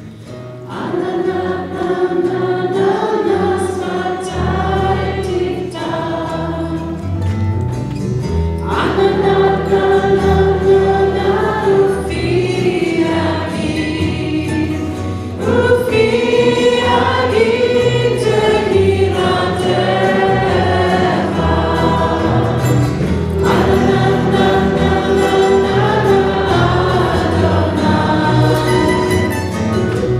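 Choir singing a song in phrases a few seconds long, with low sustained instrumental accompaniment; the music swells in about a second in.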